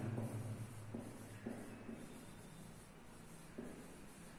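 Dry-erase marker writing on a whiteboard: a series of short, faint scratching strokes as words are written out.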